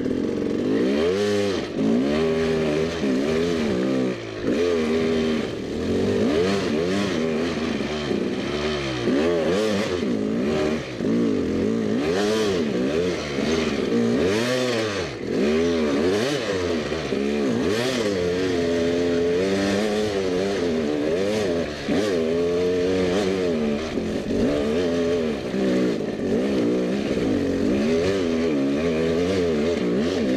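Dirt bike engine revving up and down over and over, the throttle worked in short bursts as the bike picks its way over loose rock, the pitch rising and falling about once or twice a second with a few brief drops.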